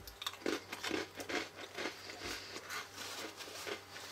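Chewing a Hot Cocoa Oreo sandwich cookie close to the microphone: a run of small, irregular crunches.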